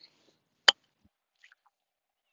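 Golf club striking the ball on a pitch shot: one crisp, sharp impact about two-thirds of a second in, a solid, well-struck contact.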